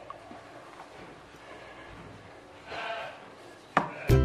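Quiet room background with one faint, short voice-like call about three quarters of the way through, and a brief click just before the end.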